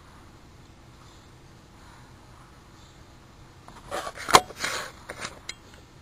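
Quiet room tone with a faint steady hum, then about four seconds in a brief flurry of handling noise and a single sharp click.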